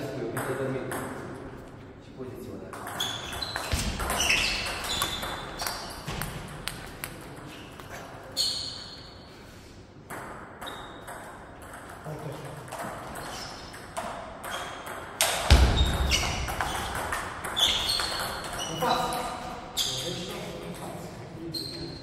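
Table tennis ball clicking back and forth between rubber bats and the table in rallies, with a heavier thud about fifteen seconds in.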